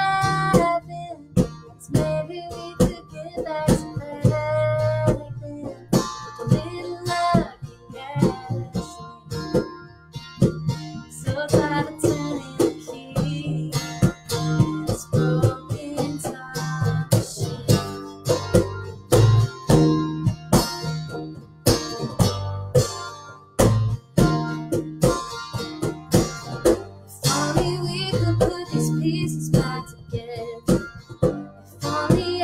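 Acoustic guitar strummed in a steady rhythm over an acoustic bass guitar line, with a woman singing the melody.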